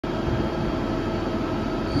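TRAUB TNA 300 CNC lathe running: a steady machine hum with several steady whining tones over it. Its chuck starts to spin near the end.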